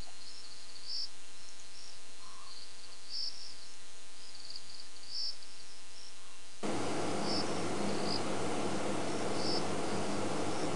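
Night insects, crickets, chirping in short high bursts about once a second. About six and a half seconds in, a steady hiss comes in suddenly underneath and stays.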